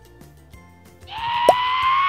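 Faint background music, then about a second in a loud whistle-like sound effect starts: one held tone, rising slightly, with a hiss under it.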